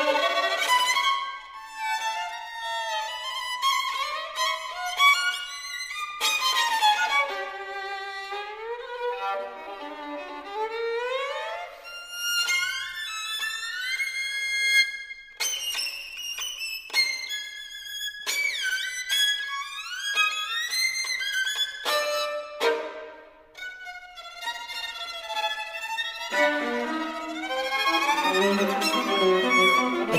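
Solo violin playing fast, virtuosic contemporary concert music: rapid gliding notes, double stops with two rhythmic lines played on two strings at once, and sharp accented attacks. Lower notes join in near the end.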